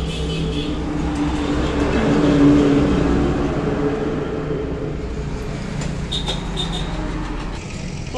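Motor vehicle engine running steadily with a low hum, swelling louder about two to three seconds in as traffic passes close by.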